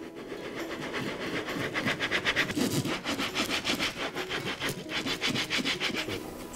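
Rapid, regular rubbing strokes on a wooden print block, about eight a second, in a steady back-and-forth rhythm.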